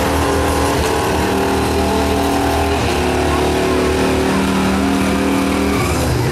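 Pickup truck's gas engine running hard under load as it drags a weight-transfer pulling sled, a loud, steady rumble that holds its pitch with small steps.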